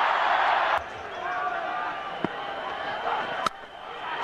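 Stadium crowd cheering as a four runs to the boundary, cut off abruptly about a second in. A quieter crowd murmur with faint wavering voices follows, broken by two sharp clicks.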